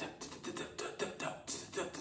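A quick, uneven run of short percussive clicks, a few a second, with no clear speech.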